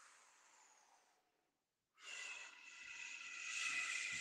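A man's slow, deliberate deep breath through pursed lips. It starts about halfway through after near silence: a breathy hiss with a faint whistle that grows louder toward the end.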